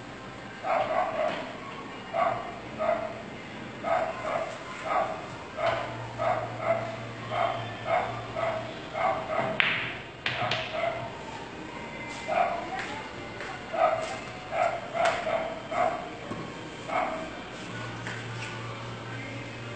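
A dog barking repeatedly, roughly one to two barks a second with short gaps, and a single sharp click about halfway through.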